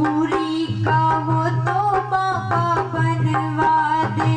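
Live Haryanvi devotional song: a woman singing into a microphone over hand-drum beats and melodic accompaniment, played loud through a PA.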